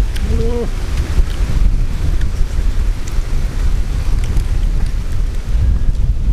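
Wind buffeting the microphone: a steady, gusty low rumble. A brief voiced hum is heard just after the start.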